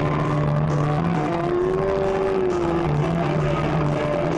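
Loud live rock music, distorted by a close amateur recording: long held electric guitar notes, one bending up and back down about halfway through, over a steady bass note.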